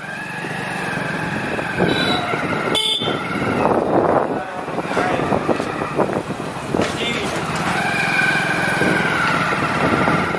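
Busy fair-street ambience: people talking and motorcycles and other vehicles passing, with a long steady high tone, like a held horn, over the first few seconds and again near the end.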